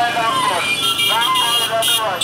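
A crowd of men's voices calling out over the noise of a motorcycle procession, with a high steady tone joining about a second in.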